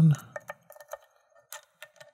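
Small, irregular metallic clicks and ticks from a thin lock pick working the pins of a five-pin Eagle pin-tumbler cylinder under light tension, as the binding pins are lifted and set one at a time.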